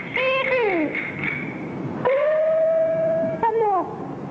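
Peking opera dan-role falsetto voice, from a male performer, delivering a drawn-out line. There is a short phrase that swoops up and falls away, a long held note about halfway through, then a falling glide near the end.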